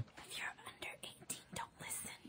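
Faint whispered voices: short breathy sounds with no full-voiced speech.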